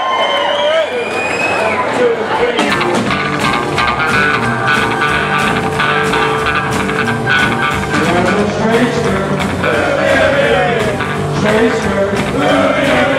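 Live rockabilly band kicking into a song: drums and slapped upright bass come in about two and a half seconds in after a man's voice, and a man starts singing over the band near the end.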